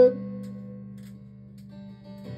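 Acoustic guitar chord left ringing, slowly dying away.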